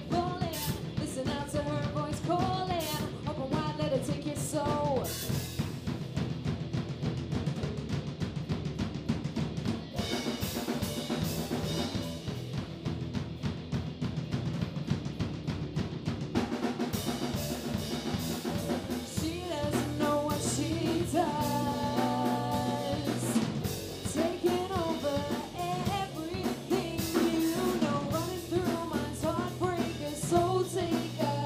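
A live rock band plays a song: two female singers over electric guitar, bass guitar and a Yamaha drum kit, the drums keeping a steady beat throughout. The singing carries through the first few seconds, drops out for a stretch, and comes back in the second half.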